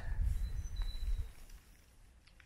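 Low rumble of wind on the microphone with a couple of faint, high bird chirps, fading to near silence after about a second and a half.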